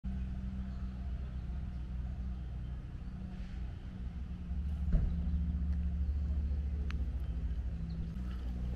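A steady low mechanical hum and rumble, with a brief click about five seconds in.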